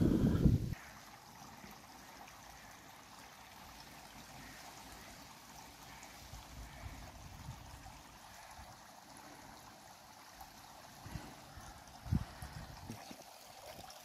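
Faint, steady trickle of water from the stone fountains in an ornamental lily pond. A brief low rumble on the microphone comes at the very start, and there are a couple of soft low knocks near the end.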